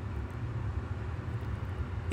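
Steady low hum with a faint hiss: the recording's background noise in a pause between spoken phrases.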